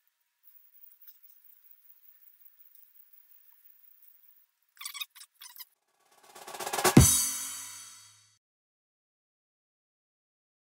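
Faint scattered ticks, then a few sharp drum hits about five seconds in, followed by a drum roll that swells into one loud hit with a ringing decay about seven seconds in: a percussion sound effect.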